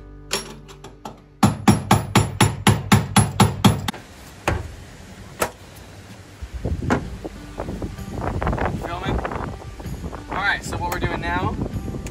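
A claw hammer striking a metal electrical box, about ten quick, evenly spaced taps with a ringing note in the first few seconds.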